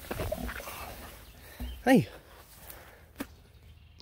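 Handheld camera rig brushing through garden plants: low bumps and scuffs of handling noise that fade to quiet. A man calls "hey" once, about two seconds in.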